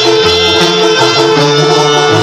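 Live banda music playing loud from a concert PA, recorded from within the crowd: wind instruments hold a long chord over a low bass line that steps to a new note every half second or so. It is the instrumental part of a ranchera, with no singing.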